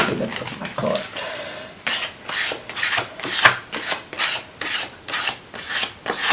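A flat plastic card scraping wet acrylic paint across a paper journal page in quick back-and-forth strokes, about two to three a second, starting about two seconds in. Before that, a knock as a paint tube is set down on the table.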